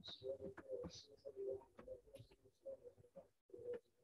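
Faint dove cooing in the background: a run of soft, repeated low notes.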